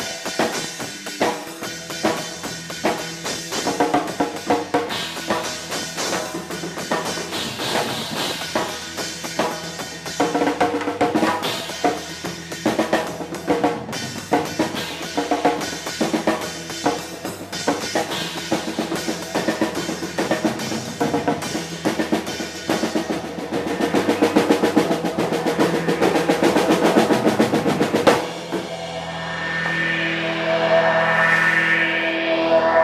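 Drum kit played hard and busily, with snare, bass drum and cymbals, and an electric bass underneath, heard close up from among the drums. The playing grows louder toward the end, then the drums stop suddenly about two seconds before the end, leaving held notes ringing.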